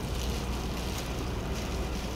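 Steady outdoor background noise heard through the open car: a low rumble with a hiss over it and no distinct events.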